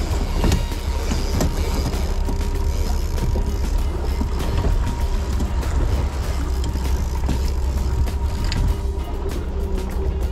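Steady low rumble of a fishing boat's engine under way, with wind and water rush, and music playing in the background.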